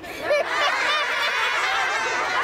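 A classroom of children laughing together, many overlapping voices, starting about a quarter second in and keeping up.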